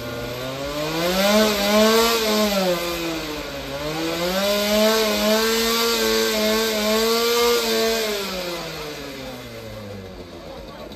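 Small vintage motorcycle engine revved hard into a sound-level meter for a loudness measurement: it revs up, drops back, then revs up again and holds for about four seconds before falling back toward idle near the end. The reading afterwards is 116.9 dB.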